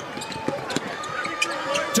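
A basketball being dribbled on a hardwood arena court, a series of sharp bounces, with sneakers squeaking as players move and arena crowd noise underneath.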